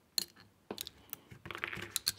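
Light metallic clicks from a steel handcuff being worked open with a bobby pin: a few scattered ticks, then a quicker run of clicks near the end.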